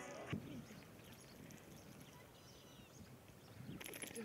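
Music cuts off about a third of a second in, leaving faint, near-silent background ambience with a few light clicks near the end.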